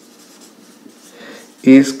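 Marker pen writing on a whiteboard, faint, with a spoken word near the end.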